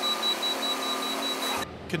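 Compact excavator's engine running steadily, with a high, rapidly pulsing tone over it. The sound cuts off abruptly about one and a half seconds in.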